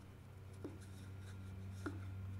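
Faint steady low hum with two light knocks, one early and one near the end, as wooden boards are handled by hand.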